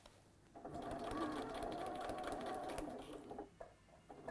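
Domestic electric sewing machine running steadily as it stitches through fabric, starting about half a second in and stopping a little after three seconds.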